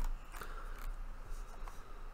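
A few faint, short scratchy clicks from a pen or stylus handled on the writing surface, over a steady low hum.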